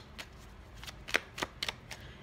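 Tarot cards being handled: about six short, sharp card clicks and snaps, the loudest a little past the middle.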